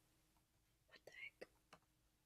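Near silence: room tone, with a few faint clicks and a brief soft breath or whisper about a second in.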